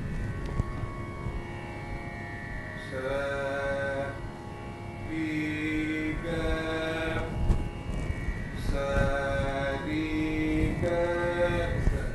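A voice singing plain, held svara notes without ornament in the Carnatic style, a three-note phrase sung twice, demonstrating the sadharana gandhara (Ga2) position. A faint steady tone runs underneath.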